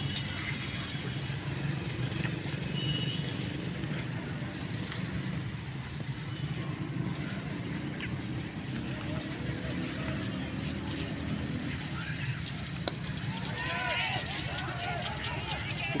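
Distant GEU 20 diesel-electric locomotive engine running, a steady low hum, with faint voices of bystanders near the end.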